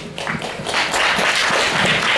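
Audience applauding, the clapping swelling about half a second in and then holding steady.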